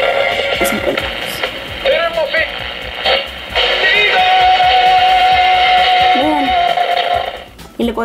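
A 1986 Multi Toys Corporation toy stereo's built-in radio playing a station, music and voices coming thin out of its tiny speaker with no high end. The sound dips briefly about three seconds in and drops away near the end as its knobs are turned.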